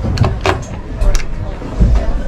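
Several sharp clicks from a boat galley's push-button drawer latch, then the drawer sliding open with a low thump near the end.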